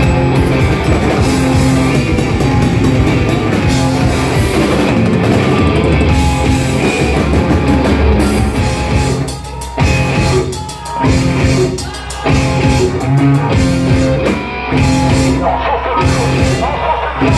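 Noise-rock band playing loud and live: distorted electric guitars over a drum kit. Several times in the second half the band drops out for a moment before crashing back in.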